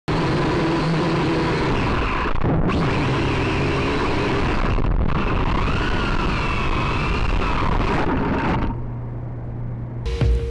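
Syma X5C quadcopter's small electric motors and propellers buzzing in flight, heard through its onboard camera's microphone, with whining tones that waver in pitch as the motors change speed around the middle. The sound cuts out briefly twice and drops to a quieter low hum near the end.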